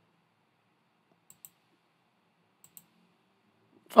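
Two faint pairs of computer mouse clicks, the clicks in each pair close together and the pairs over a second apart, against near silence.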